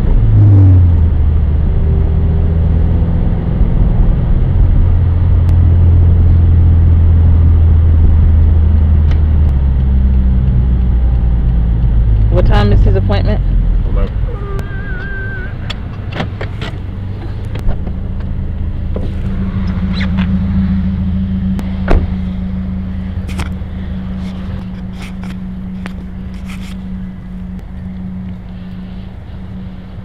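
Low rumble of a car's engine and road noise heard inside the cabin, loud at first and easing off about halfway through into a steadier, quieter hum. A few sharp clicks and knocks come near the middle.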